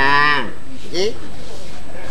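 A man's voice in a drawn-out, moo-like vocal call whose pitch falls away, followed about a second in by a short rising vocal sound.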